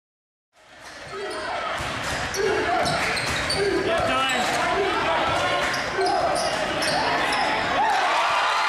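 Basketball game sound fading in about half a second in: a ball dribbling on the hardwood court, sneakers squeaking, and players and crowd shouting in a large gym.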